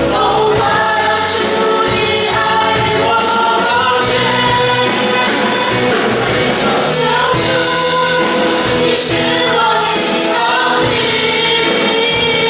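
Worship team of mixed male and female voices singing a gospel praise song together into microphones, over accompaniment with a steady beat of about two strokes a second.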